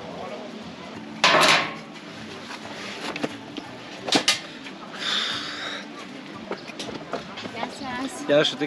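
Knocks, clicks and scrapes of a metal patio chair and small things being set down on a café table as someone settles in to sit, with a loud scrape about a second in and a longer one midway; faint voices underneath.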